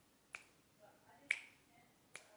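Fingers snapping twice, about a second apart, beating out a slow, steady song tempo.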